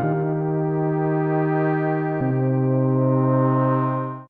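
Korg Minilogue analogue polysynth playing a lo-fi brass-style patch as sustained chords, moving to a new chord about halfway through, then fading away at the end.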